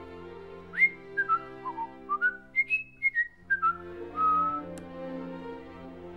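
A person whistling a short tune of about a dozen quick notes that scoop up into each pitch, ending on one longer held note, over orchestral string music.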